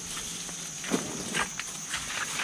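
Footsteps and a hand meeting a metal chain-link gate: a few short clacks and scuffs, the loudest about a second in, over a steady high-pitched insect drone.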